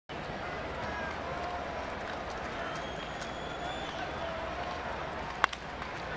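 Steady murmur of a baseball stadium crowd with faint scattered calls, then near the end a single sharp crack of a bat hitting a ball hard.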